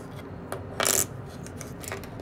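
A short burst of handling noise close to the microphone about a second in, a brief clatter over faint room sound.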